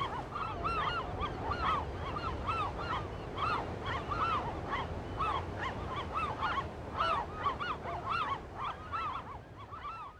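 A flock of geese honking: many short overlapping calls, several a second, over a low steady rumble. They fade out at the very end.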